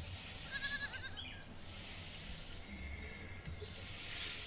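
Hand broom sweeping a floor, a faint scratchy hiss in short strokes. About half a second in there is a brief high, wavering animal call.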